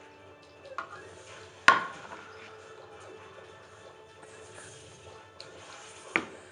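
Quiet background music, with a sharp clink from a plastic measuring cup knocking on the table or the other cup about a second and a half in, and a fainter knock just before it.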